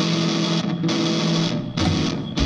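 Live rock band playing an instrumental passage: electric guitar chords held and then cut off in short stops, about halfway through and again near the end.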